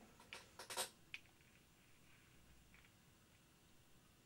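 Near silence, with a few faint clicks and a short scratchy rustle in the first second or so, from hands handling a small wooden model aircraft on a sheet of card.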